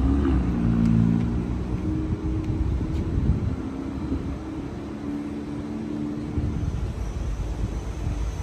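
A motor vehicle engine in nearby city traffic, a low droning hum over a rumble, loudest early and dying away about seven seconds in as it passes.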